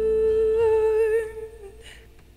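A woman humming a wordless vocal line: one long held note with a slight waver that fades out about one and a half seconds in.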